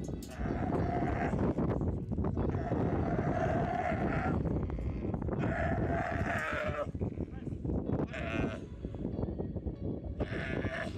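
Young camel bawling in distress as it is wrestled down and restrained: about four long, pitched calls, each a second or two long, over scuffling in the dirt.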